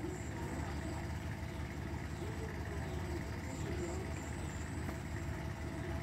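Iseki TS2810 tractor's diesel engine running steadily under load as it works a flooded rice paddy on cage wheels.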